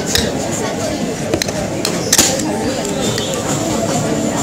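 A metal spoon clinks against a bowl a few times, the sharpest click a little past halfway, over a steady background of people's voices.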